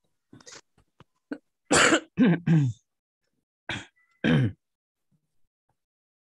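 A person coughing and clearing their throat, a quick cluster of harsh coughs about two seconds in, then two more a couple of seconds later.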